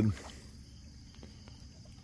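Low, steady outdoor background on a riverbank with a couple of faint soft ticks, after a man's voice breaks off at the very start.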